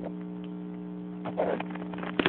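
A steady low hum, with a brief soft noise about a second and a half in.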